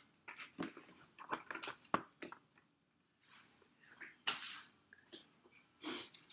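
Scattered clicks, taps and rustles of craft tools and paper being moved about on a work desk while a piercing mat is searched for, with a short lull in the middle and a louder rustle near the end.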